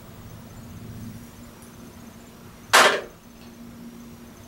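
A glass nail polish bottle set down on a hard surface: a single short clack about three-quarters of the way in, over a faint steady hum.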